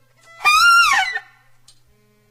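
A single high note with a reedy, overtone-rich sound from a free-improvisation ensemble, held for a moment and then sliding down in pitch before breaking off. It is an isolated gesture over a faint steady hum.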